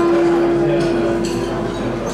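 Live Gypsy band music: a single long note held steady for nearly two seconds, with fainter ringing string notes under it.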